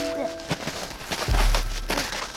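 Footsteps in snow, a few crunching steps, with a low rumble on the microphone about halfway through. Held background music notes stop about half a second in.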